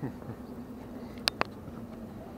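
Two sharp clicks in quick succession about a second in, over a faint steady hum.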